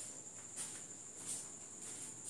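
Faint room tone with a steady high-pitched whine, and a couple of soft brief noises about half a second and a second and a quarter in.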